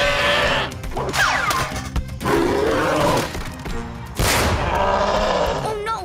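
Cartoon soundtrack over background music: a cartoon Tyrannosaurus cries out in fright as a balloon pops, with a sharp pop-like burst about four seconds in.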